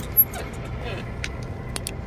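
Riding noise from a bicycle rolling on an asphalt bike path: a steady low rumble of tyres and wind, with a few light clicks and rattles, the loudest about a fifth of a second in.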